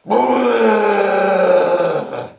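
A long, loud, drawn-out groan of protest voiced for a raven hand puppet, one held note sinking slightly in pitch: the puppet's disgust at being told to drink water.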